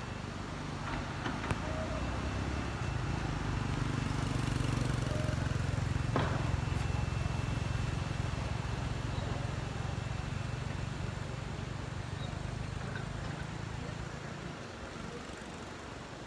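A motor vehicle's engine running with a low hum, growing louder over the first few seconds and fading away near the end.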